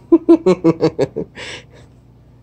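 A man laughing: a quick run of short "ha" bursts, about six a second, then one breathy exhale about one and a half seconds in.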